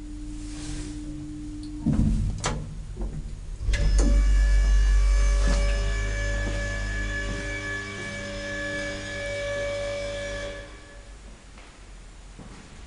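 Vintage JÄRNH elevator machinery at the ground floor. A steady running tone ends in a knock as the car stops, followed by a click. About four seconds in, a loud electric motor hum with a high ringing whine starts, holds for about seven seconds, then drops away near the end.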